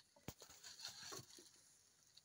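Faint crackling and snapping of dry twigs and leaves as an African elephant breaks and strips branches from a bush while feeding. There are a few sharp snaps in the first second, thinning out in the second half.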